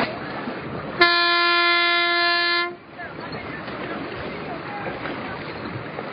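A race signal horn sounds one steady blast of about a second and a half, starting and stopping sharply, over wind and water noise.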